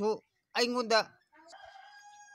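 A rooster crowing faintly in the distance, starting just past the middle and still going at the end, after a short call from a man's voice.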